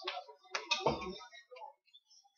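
Handling noise: a quick series of sharp clicks and taps, with a dull thump about a second in.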